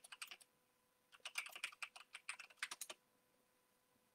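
Typing on a computer keyboard: a short run of key clicks, a brief pause, then a longer run of about two seconds that stops about three seconds in.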